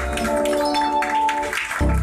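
Live lăutărească band music: an accordion playing held notes and melody over deep bass notes, with light percussive taps.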